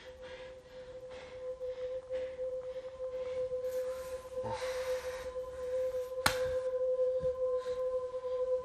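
A steady, ringing pure tone sustained as a suspense drone in the film's sound design. A sharp click comes about six seconds in, and a second, higher tone joins the first after it.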